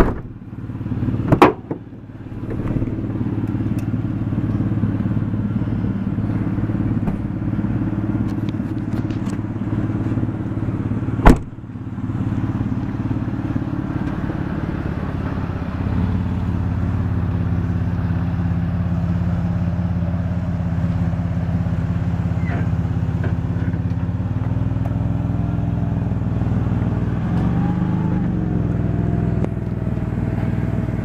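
2003 Ford Windstar van's engine idling steadily, its note shifting slightly twice partway through. Two loud sharp thumps cut in, one about a second in and one about eleven seconds in.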